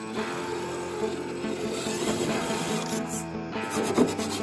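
Background music with a melody that moves in steps, over a rough rubbing, scraping noise.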